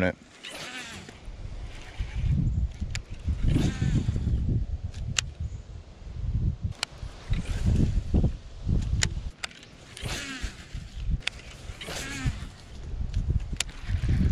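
Irregular low rumble of wind and handling noise on the microphone, broken by scattered sharp clicks from the baitcasting rod and reel being worked. Faint voices are heard now and then.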